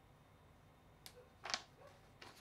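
Quiet at first, then a few brief, faint rustles and scrapes of a sheet of paper being slid under a 3D printer nozzle during paper-method bed levelling, the clearest about halfway through.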